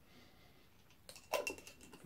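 Quiet at first, then about a second in a few short clicks and scrapes from an open metal tobacco tin and its lid being handled, with a faint metallic ring after them.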